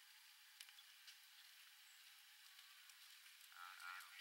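Near silence: a faint steady hiss with a few soft ticks, and faint voices starting near the end.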